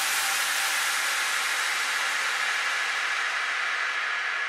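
Synthesized white-noise wash from the outro of a dubstep-style electronic track, a steady hiss with no beat or melody, slowly fading.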